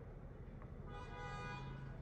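Car horn honking once, a steady blast of about a second near the middle, over low traffic rumble.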